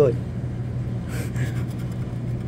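A scratch-off lottery ticket being scraped with a tool in a short stroke about a second in, over a steady low hum.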